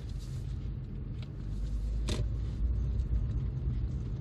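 Steady low rumble of engine and road noise inside the cabin of a moving 2005 Lexus IS250 SE, whose 2.5-litre V6 is running under way. One brief sharper sound comes about two seconds in.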